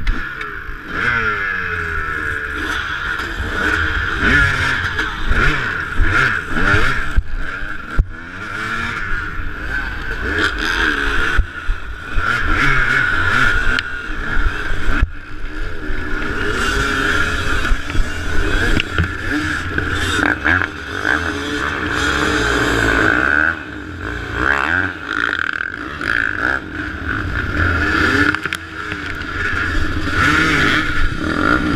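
Off-road dirt bike engines revving hard and easing off again and again as the rider works along a rough trail. Other bikes rev close by, with a few sharp knocks and clatters.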